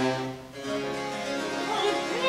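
Baroque continuo: a harpsichord playing chords, with a low bowed bass note held for about the first half second.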